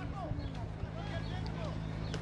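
Faint distant voices of players and onlookers calling out during a football match, over a steady low hum.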